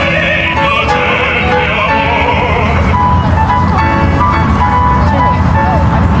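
Operatic singing with wide vibrato, accompanied by piano, in the first half. From about halfway a separate tune of short, steady notes without vibrato sounds over a constant low rumble.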